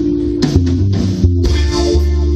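Live band playing: electric bass and guitars over drums, the bass line moving between notes with drum and cymbal hits throughout.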